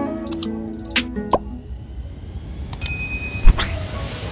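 Subscribe-button animation sound effects over background music. The music fades out in the first second or so amid several sharp clicks, a short bright ding comes near the three-second mark, and a loud thud follows just after.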